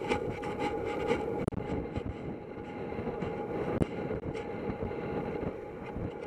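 Steady rush of wind and movement noise on a helmet-mounted camera as a horse gallops across grass, with a few sharp knocks scattered through.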